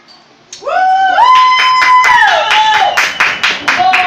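A child's high-pitched voice in a long drawn-out cry that rises, holds, steps up and glides back down, with hands clapping quickly alongside it from about a second in.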